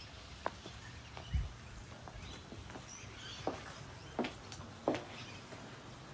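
Footsteps walking up an exposed-aggregate concrete driveway: a handful of soft, scattered steps and knocks, with a low thud about a second and a half in, over a quiet outdoor background.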